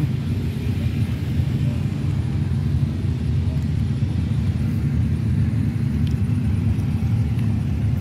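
A steady low rumble with no clear pitch and no sudden events.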